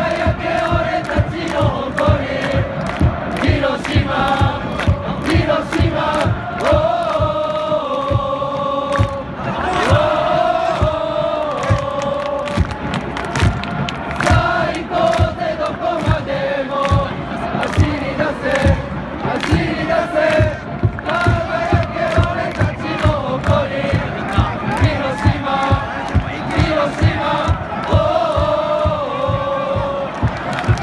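Football supporters singing a chant together in unison over a steady, regular drumbeat.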